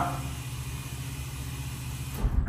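OTIS hydraulic elevator cab levelling into the lower floor on its descent, heard from inside the cab as a steady low hum.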